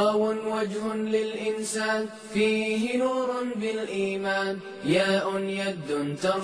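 Background vocal music: a single voice chanting in long held notes, sliding up in pitch into several of them.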